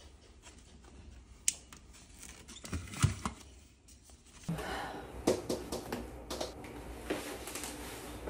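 A few sharp clicks and a dull knock from handling a floor lamp's power cord and switch, then, after a change of scene, a steady kitchen background with scattered clicks and knocks from reaching into an open refrigerator.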